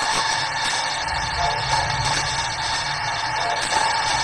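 A steady, sustained eerie drone from an anime soundtrack, held at an even level with a low rumble underneath.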